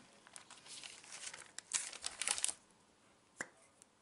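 Faint rustling and crinkling as small items are handled on a table, followed by a single short click about three and a half seconds in.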